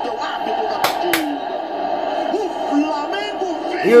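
Football match broadcast playing on a TV: steady stadium crowd noise under a commentator's voice, with two sharp clicks about a second in.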